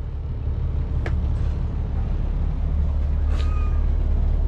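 Steady low drone of a diesel pusher motorhome's engine and generator both running, heard from inside the coach. A faint click comes about a second in, and a brief thin squeak a little past three seconds.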